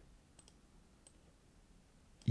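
Near silence with three faint computer mouse clicks: two close together about half a second in, and one about a second in.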